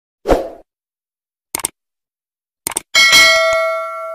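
Intro-animation sound effects: a low thump, two quick clicks, then a bright bell-like ding that rings on and fades away over about a second and a half.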